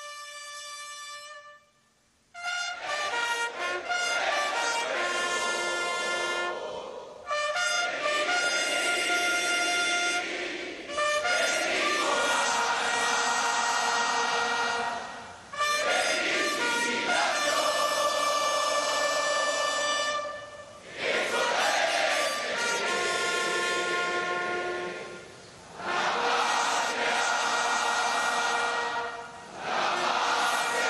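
Military brass band playing ceremonial honors music, with a single held note at the start and then the full band in phrases of several seconds separated by short pauses. It is played while the troops present arms to a standard.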